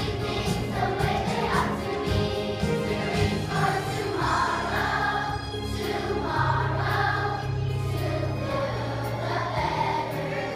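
Children's choir singing together over an instrumental accompaniment with long held bass notes.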